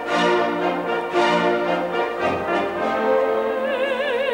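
Opera orchestra playing sustained chords with brass to the fore, a low note coming in a little past halfway. A soprano starts singing with wide vibrato near the end.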